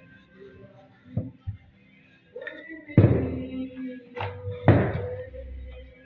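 Knocks of kitchen tools on a wooden worktable while dough is worked: a few light taps, then two loud sharp knocks about a second and a half apart. Faint music plays underneath.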